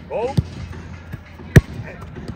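A football kicked on a grass pitch: one sharp thud about one and a half seconds in, with a fainter knock shortly after the start.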